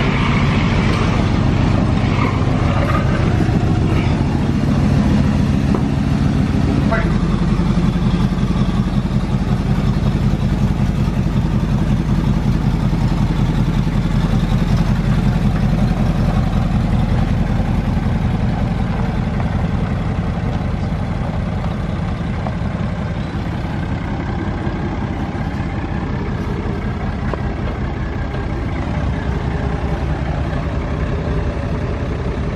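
Pickup truck engine of a 1987 GMC Sierra running steadily as the stripped-down truck is driven. Its note changes abruptly about seven seconds in and it grows slightly quieter in the second half.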